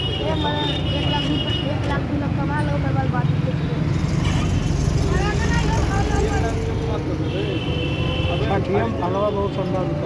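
Busy market street: a steady rumble of motorcycle and road traffic under many overlapping voices of people around. A high, steady tone sounds for the first two seconds and again about eight seconds in.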